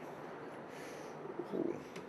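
Soft rustle of a paper fortune slip being handled and unfolded, then a short low "ooh" near the end.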